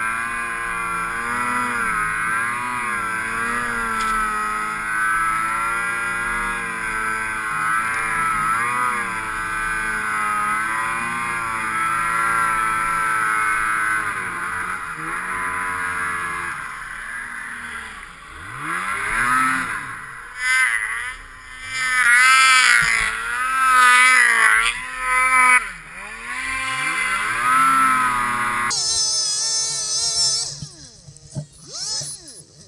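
Ski-Doo 600 H.O. two-stroke snowmobile engine running at high revs under load in deep powder, its pitch wavering. From about halfway the throttle is let off and opened again several times, the pitch falling and climbing with each blip.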